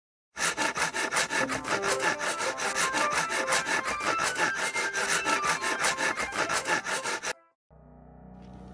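Logo intro jingle: a fast, even train of scraping strokes, about seven a second, with short melodic notes over it, which cuts off abruptly shortly before the end.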